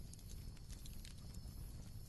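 Faint background ambience: a low steady rumble with a few scattered faint ticks.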